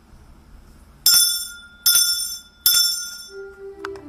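Altar bell struck three times, about a second apart, each strike ringing and dying away, marking the elevation at the consecration of the Mass. Keyboard music begins near the end.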